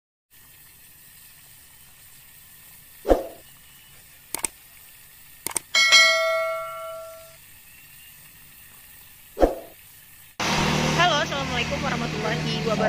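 Sound effects of a subscribe-button animation: a whoosh, two quick pairs of mouse clicks, then a notification bell ding that rings out for about a second and a half, and a second whoosh near the end.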